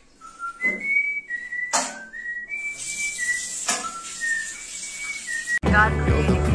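A person whistling a short tune of steady, pure notes, with three sharp knocks along the way. Music with a voice cuts in suddenly near the end.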